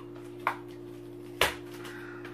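Two sharp clicks from the drone's cardboard and plastic packaging being handled, the second louder, over a steady low hum.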